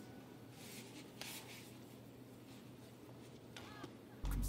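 Faint sounds of a badminton rally on court: a few sharp hits of racket on shuttlecock in the first half, and a short shoe squeak near the end.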